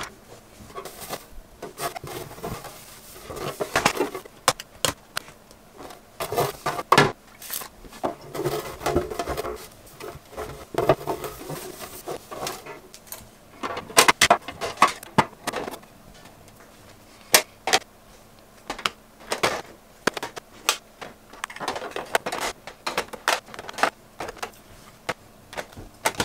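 Clear acrylic makeup drawer being handled, wiped with a cloth and refilled with highlighter compacts: irregular sharp clicks and clacks of plastic compacts and acrylic knocking together, with short stretches of cloth rubbing in between.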